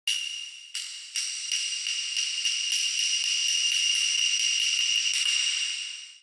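High, shimmering intro sound effect for a channel logo animation. A steady high ringing is struck anew about three times a second, and it fades out near the end.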